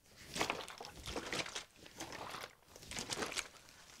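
A large plastic bottle nearly full of water with a pile of salt in it, shaken hard several times: water sloshing and the thin plastic crinkling, to mix the salt into the water so it dissolves.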